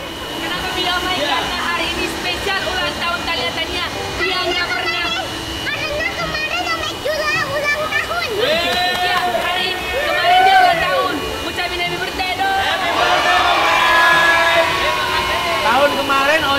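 A young girl talking excitedly, with other voices chattering around her and a faint steady high hum underneath.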